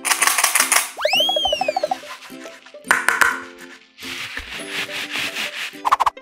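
Hard-shelled candy-coated chocolates rattling and sliding against plastic in several bursts, over bright background music. About a second in, a cartoon 'boing' whistle rises and falls.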